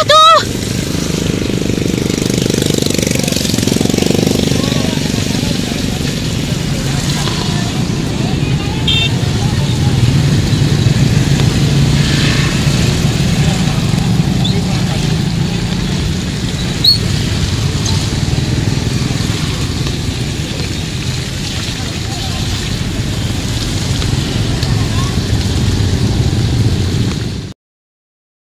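Steady outdoor din of motorbike traffic with faint scattered voices, cutting off suddenly near the end.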